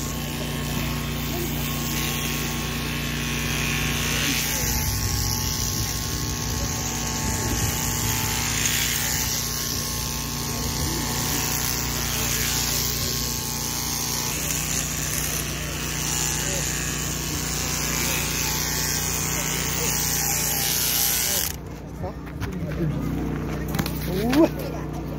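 Electric shearing machine running steadily with a constant buzz as its handpiece clips the fleece off a vicuña. The cutting hiss drops away near the end.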